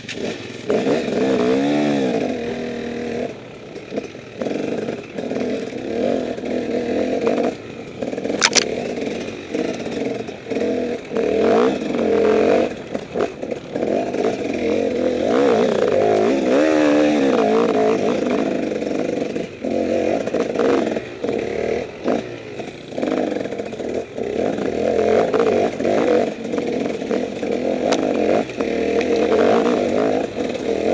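Enduro motorcycle engine climbing a rough trail, revving up and down as the throttle opens and closes, with knocks and rattles from the bike over the rocky ground. A brief sharp high sound about eight seconds in.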